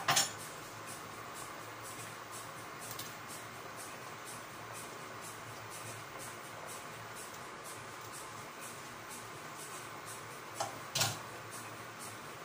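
Pot of seafood soup simmering on the stove, a steady bubbling hiss with faint ticks. A sharp clatter comes right at the start, and two knocks about half a second apart come near the end.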